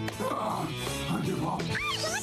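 Cartoon soundtrack: a character's voice over background music, then, near the end, a run of short high rising squeaks from a cartoon creature, which a listener might take for a mewing cat.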